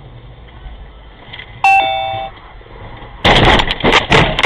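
Low steady rumble of a moving vehicle. Partway through, a two-note falling electronic chime sounds once. Near the end comes a sudden loud burst of noise with sharp knocks.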